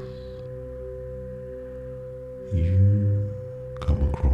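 Meditation background music of steady, held ringing tones like a singing bowl, with a louder low swell about two and a half seconds in.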